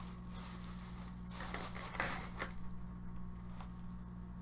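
Faint rustling of a hockey jersey's fabric as it is unfolded and handled, a few soft brushes over a steady low hum.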